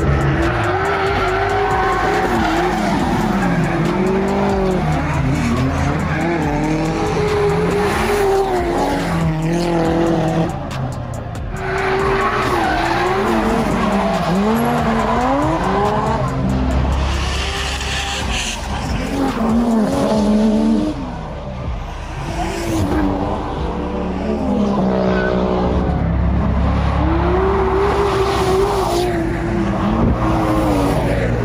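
Drift cars' engines revving up and falling back again and again as they slide through the corners, with tyre squeal.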